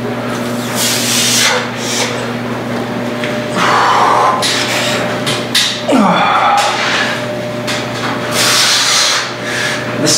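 A man breathing hard through the mouth while doing dumbbell goblet squats, a forceful exhale every second or two, with a short voiced grunt about six seconds in. A steady low hum runs underneath.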